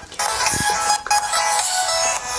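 Music playing from the small built-in speaker of a Bluetooth LED fidget spinner, with little bass and two brief drop-outs.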